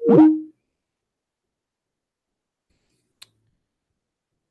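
A short electronic notification sound lasting under half a second: quick gliding pitches that settle on a steady note. About three seconds later comes a single faint click.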